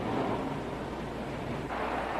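Steady low rumble and hiss of background noise, with no clear single event.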